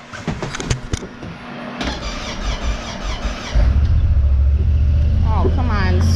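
Small diesel tractor engine being cranked by its starter, catching about three and a half seconds in and then running loudly and steadily. It is hard to start: it still needs several cranks even after about 40 seconds of glow-plug preheat.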